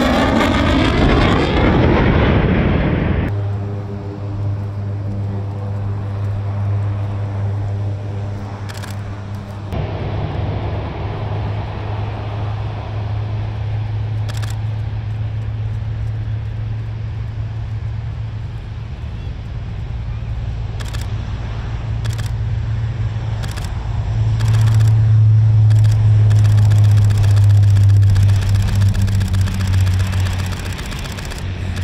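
For the first three seconds an F-16 fighter jet passes overhead with a loud, even jet roar that sweeps as it goes by. Then a C-130 transport's four turboprop engines run at takeoff power with a steady low propeller drone, swelling loudest near the end as the aircraft lifts off and climbs steeply.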